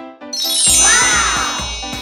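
A bright, shimmering chime sound effect rings out suddenly about a third of a second in and slowly fades, over background music.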